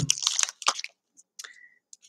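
A thin clear plastic bag crinkling and rustling as a stack of baseball cards is handled and pulled out of it, mostly in the first second, then a faint short squeak about one and a half seconds in.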